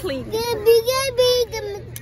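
A young child's voice held on a steady high pitch for about a second, like singing.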